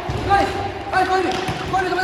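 Soccer balls being dribbled, with repeated knocks and thuds of the balls on the hard court floor in a large echoing hall, and children's voices calling over them.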